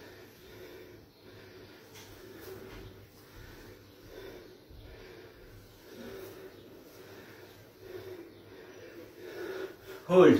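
A man's heavy, effortful breathing while he works through squats, heard as faint, irregular puffs of breath every second or two.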